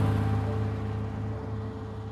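Mercedes-Benz 280 SL's straight-six engine passing close by and fading as the car drives away, loudest at the start and dying down.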